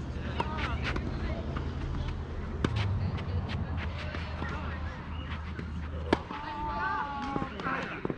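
Tennis ball being struck by racquets during a rally: a few sharp pops at uneven gaps, the loudest about six seconds in, over faint distant voices and a steady low hum.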